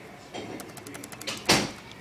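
Quick light clicks from a laptop's keys, then a single louder knock about a second and a half in.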